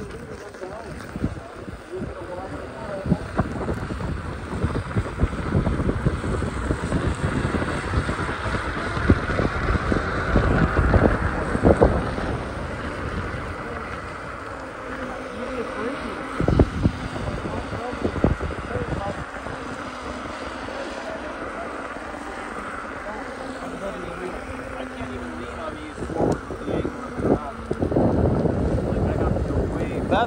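Wind buffeting the microphone of a camera moving along a street, a gusty low rumble that swells around the middle and again near the end.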